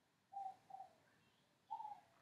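Near silence with three faint, short calls of a distant bird, the last a little longer than the first two.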